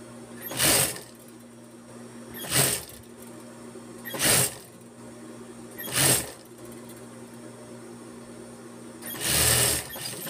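Industrial sewing machine stitching in short bursts: four brief runs spaced about two seconds apart, then a longer run near the end, with a steady low hum between them.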